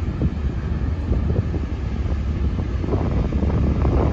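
Wind rumbling and buffeting on the microphone of a boat under way, over the steady low running of the boat's engine.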